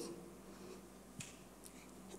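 Quiet room tone with a faint steady hum, and one faint click about a second in.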